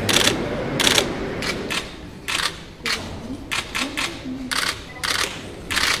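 Press cameras' shutters firing in quick bursts and single clicks, about a dozen irregular volleys, over a low room murmur that fades after about two seconds.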